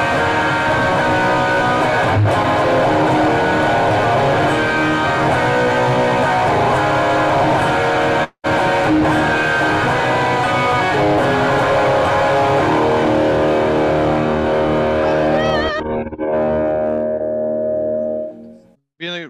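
Amplified electric guitar played solo, a busy run of notes and chords. The sound drops out for an instant about eight seconds in. From about twelve seconds the playing thins to a few held notes that ring out and fade near the end.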